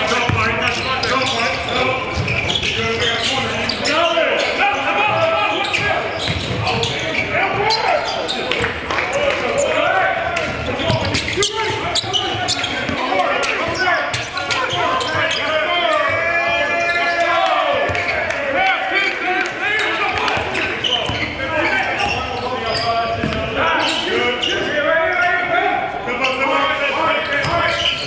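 Basketball scrimmage sound in a large gym: indistinct voices of players calling out, with a basketball bouncing on the hardwood in sharp knocks, all echoing in the hall.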